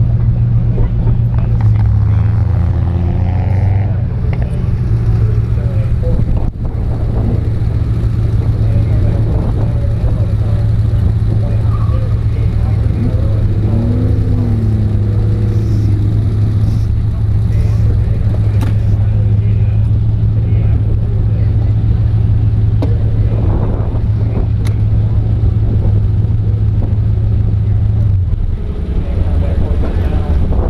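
Chevrolet Camaro's engine idling steadily, shut off about two seconds before the end.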